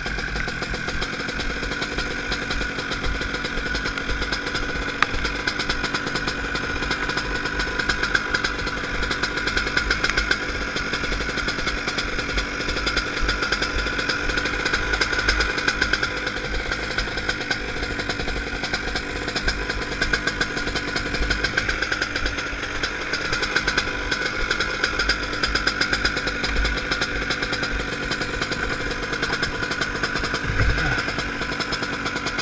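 Honda CR125 two-stroke single-cylinder engine of a shifter kart idling steadily, a rapid even popping.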